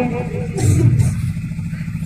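A low steady rumble with no voice over it, with a brief swell of noise about half a second in.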